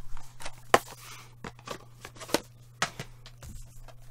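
Plastic DVD case and its fold-out paper booklet being handled: a string of sharp clicks at irregular intervals with light paper rustling between them, the sharpest click a little under a second in.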